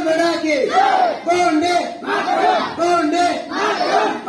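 A crowd of schoolchildren shouting a patriotic slogan in unison, in short phrases repeated at an even rhythm.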